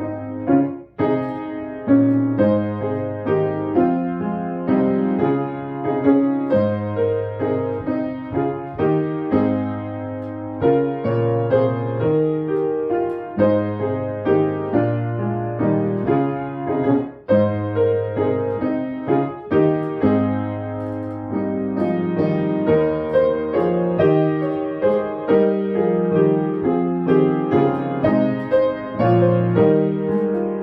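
Grand piano playing a hymn tune in full chords, note by note, at a moderate steady pace.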